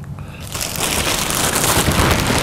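Thin plastic wrap crinkling and rustling loudly as it is pulled up off a ceramic kamado grill, starting about half a second in.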